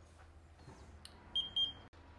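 Handheld infrared thermometer taking a reading: a single click about halfway through, then two short, high beeps in quick succession.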